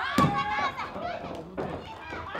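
Women wrestlers' high-pitched shouts and yells, with a single sharp thud on the ring canvas just after the start.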